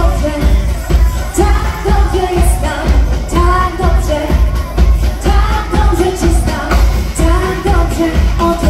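Live pop music: a female lead vocal sings a melody over a heavy, steady bass-and-drum beat, amplified through a hall's PA system.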